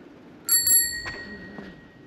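A bicycle bell rung twice in quick succession about half a second in, its bright ring fading away over about a second.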